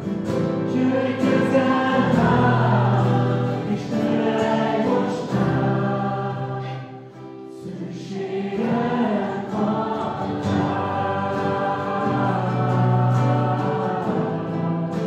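Mixed group of voices singing a Hungarian worship song together over acoustic guitars, with a short lull between phrases about halfway through.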